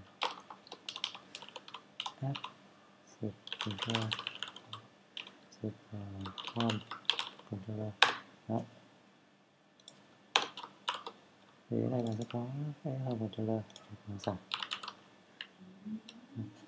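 Typing on a computer keyboard: irregular short runs of key clicks, with a low voice speaking in between.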